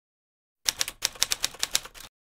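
Typewriter sound effect: a rapid run of key clicks, about a dozen a second, starting about half a second in, as the text of a title card is typed out on screen.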